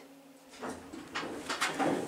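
Elevator car doors sliding open on arrival, a run of irregular rattling and shuffling that builds from about half a second in, after a faint steady hum dies away.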